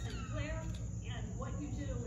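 A high-pitched human voice with pitch gliding up and down, over a steady low hum.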